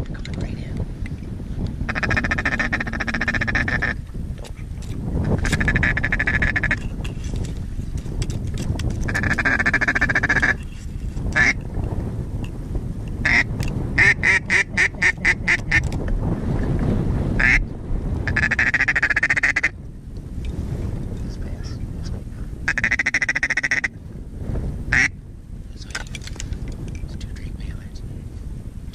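Duck quacking in repeated runs of about two seconds, with one faster run of about five quacks a second around the middle. Wind rumbles on the microphone throughout.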